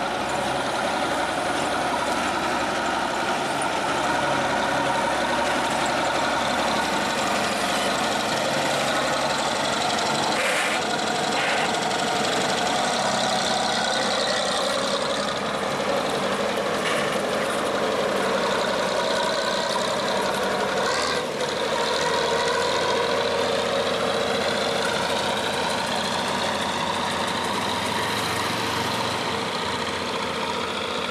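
Bizon Super Z056 combine harvester's diesel engine running steadily as the machine drives along the road.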